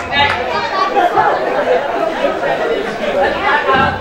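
Indistinct chatter: several voices talking over one another, with no clear words.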